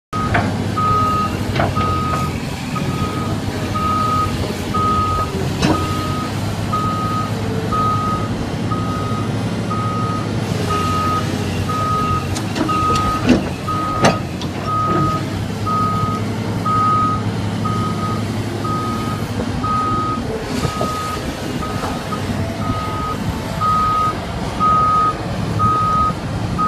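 Caterpillar 235C hydraulic excavator's diesel engine running under load as the boom and bucket are worked, with its warning alarm beeping steadily about once a second. A few sharp clanks from the machine, the loudest two about halfway through.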